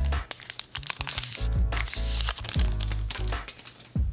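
Clear plastic cellophane sleeve crinkling and rustling as a cardboard package is slid out of it, in irregular short crackles, over background music with a steady bass.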